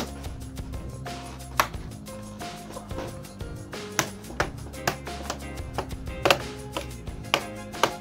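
Scattered sharp clicks and taps, about eight of them, of laptop casing and parts being handled and fitted together during reassembly, over faint background music.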